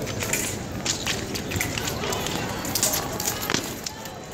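Épée fencing bout: quick footwork and stamps on the strip with sharp clicks and knocks of blade contact, a strong knock about three and a half seconds in, over a babble of voices in the hall.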